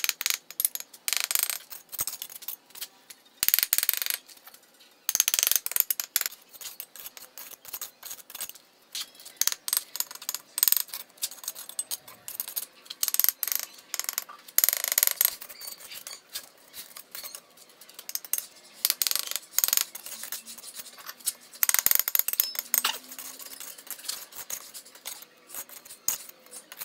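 Steel trowel scraping and tapping on clay bricks and wet cement mortar: irregular sharp clinks and scrapes, with several longer scraping strokes of about a second each.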